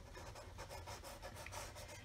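Washable felt-tip marker scratching faintly across paper in quick, short shading strokes.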